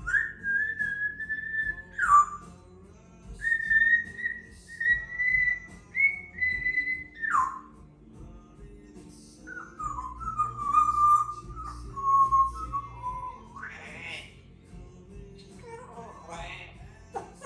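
African grey parrot whistling a tune in clear, held notes: a higher phrase of long notes ending in downward glides, then a lower phrase, closing with a quick rising sweep.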